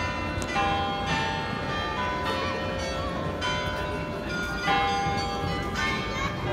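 Carillon bells in a belfry tower playing a slow tune: struck notes that ring on and overlap, a new one about every second.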